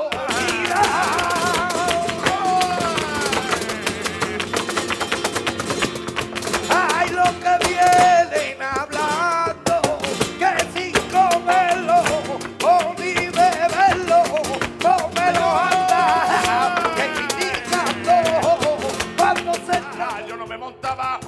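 Live flamenco alegrías: a singer's wavering melody over two flamenco guitars, with dense rhythmic hand-clapping (palmas).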